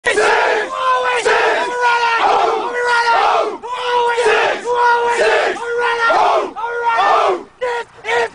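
A huddled group of young men chanting and shouting in unison. The same loud, rhythmic shouted call repeats over and over, each round a held shout followed by a falling yell.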